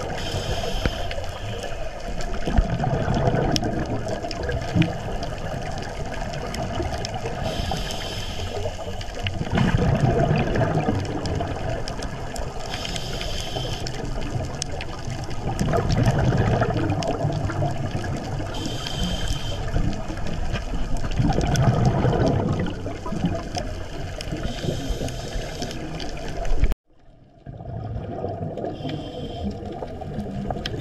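Scuba diver breathing through a regulator underwater: a short hiss with each inhalation, then a longer low rumble of exhaled bubbles, repeating about every five to six seconds. The sound cuts out for a moment near the end.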